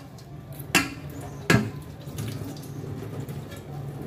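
Water sloshing and dripping in a kitchen sink as a wet aluminium pan is handled, with two sharp knocks under a second apart early on.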